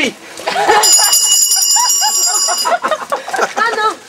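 A high, bell-like ringing of several steady tones lasts about two seconds, starting about a second in and cutting off sharply.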